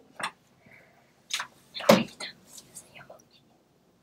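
Children whispering to each other in a few short, hushed bursts, the loudest about two seconds in.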